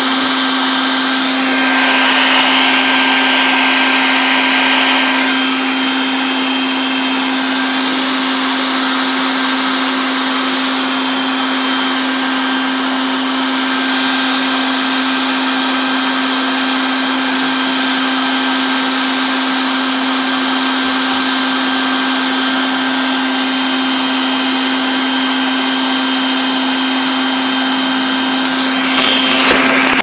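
Vacuum running with its hose held at the entrance hole of a bald-faced hornet nest, sucking up the hornets as they come out: a steady rushing with a steady low hum. The rush grows briefly louder and hissier from about two to five seconds in, and the sound cuts off suddenly at the end.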